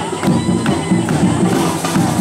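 Samba parade music, a rhythmic percussion groove, mixed with a crowd cheering and shouting.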